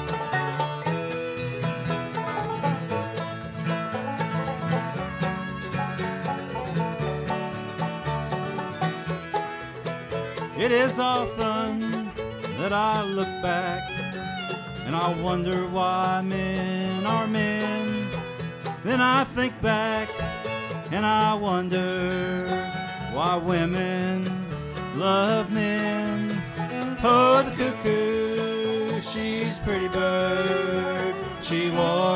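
Bluegrass band playing live. For about the first ten seconds the banjo leads; then men's voices come in singing over the banjo, acoustic guitar and upright bass.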